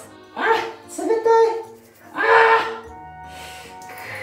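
A man's three loud yelps as lemon tea is poured over his head, over background music with steady held notes.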